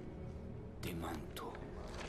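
A man whispering, in short hissing phrases about a second in, over a low steady drone.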